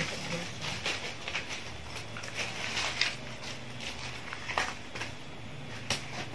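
Dry corn husks rustling and crackling as they are torn off the cobs and handled by hand, with a handful of sharp snaps among the rustle.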